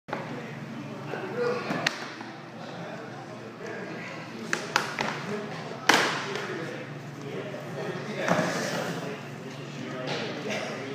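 Indistinct talking in a room, with a few sharp knocks and clacks of things handled on a table. The loudest knock comes about six seconds in.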